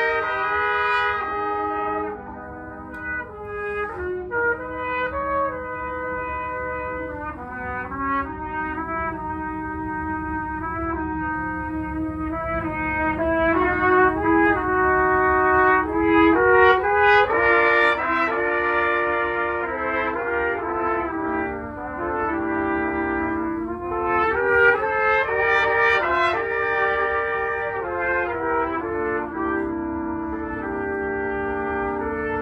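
Trumpet quartet: four trumpets playing together in harmony, a lively passage of many short notes and changing chords. The playing drops softer about two seconds in, then builds to louder phrases in the middle and again near the end.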